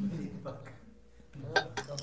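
Quiet voice sounds that fade to a near-quiet stretch, with a few light, sharp clicks about a second and a half in.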